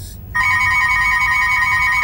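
Wall telephone ringing: a rapid warbling two-tone trill that starts about a third of a second in and lasts about two seconds, over a low rumble.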